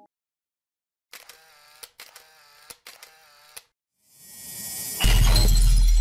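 Edited intro sound effects. First comes a crackling, glitchy pitched sound broken by sharp clicks for about two and a half seconds. Then a rising whoosh builds into a loud burst with deep bass about five seconds in, which cuts off suddenly.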